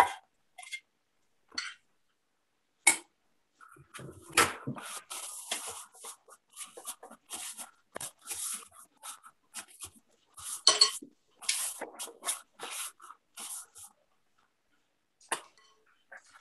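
Metal spoon scraping and tapping against a glass mixing bowl as thick batter is spooned into silicone molds: a few sharp clicks at first, then a dense run of quick scrapes and taps through the middle, with gaps cut to silence by video-call audio.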